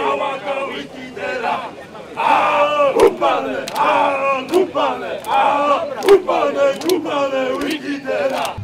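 A group of men shouting a chant in unison for a cheering dance, in short loud repeated bursts, with a few sharp smacks among the shouts.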